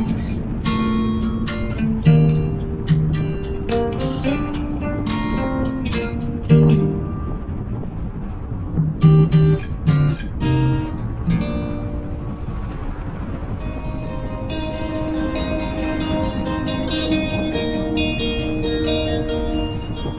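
Background music led by plucked and strummed guitar, with more sustained notes in the second half.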